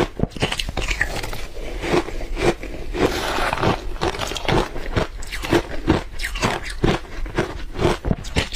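Close-miked crunching of matcha-flavoured ice being bitten and chewed: a quick, even run of crisp crunches, about two or three a second.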